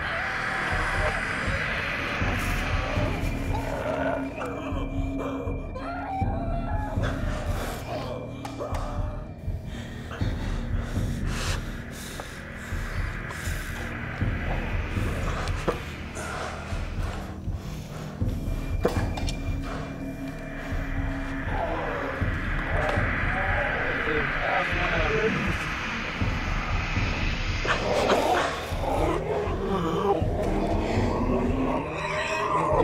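Dark, droning horror-film soundtrack with indistinct, voice-like sounds woven through it; the voice-like wavering grows stronger in the second half.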